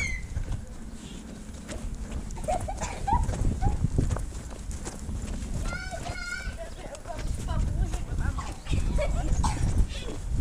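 Camera microphones carried at a run, picking up a steady low rumble and uneven thudding of footsteps and handling. Children's high voices call out now and then, with a high-pitched shriek that rises and falls about six seconds in.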